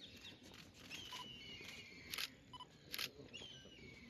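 Camera shutters clicking at a photo call, two sharp clicks a little under a second apart near the middle, with short bird chirps in between.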